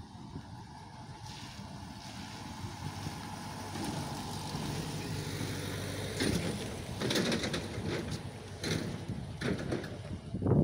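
Engine of a tourist road train running close by: a steady low hum that grows louder over the first half and is loudest around the middle, with a few short noisy bursts in the second half.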